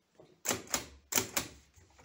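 Hammond No. 2 typewriter being typed on: four sharp key strikes in about a second, with a few fainter clicks around them.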